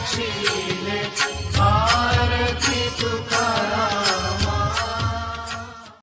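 Devotional aarti hymn: singing over sharp, steady percussion strikes about three a second, fading out near the end.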